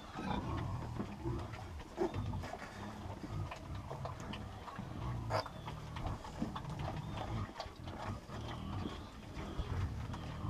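Domestic pigs, a sow and her piglets, grunting in a run of low, repeated pulses, with scattered short rustles and clicks from piglets rooting in straw.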